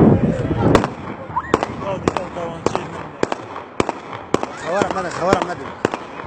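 A run of about nine sharp bangs, roughly two a second, with voices shouting between them.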